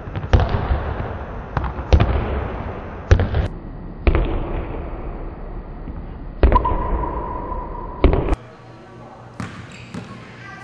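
Basketball bouncing on a hardwood gym floor while a player dribbles at speed, each bounce echoing in the gym, at an irregular pace of about eight bounces. Near the end the sound cuts to fainter, sharper bounces.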